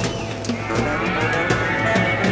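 Live rock band playing a loose instrumental jam: drums with regular cymbal strokes and a repeating bass line, over which a sustained instrument tone slides down in pitch at the start and then slowly climbs back up.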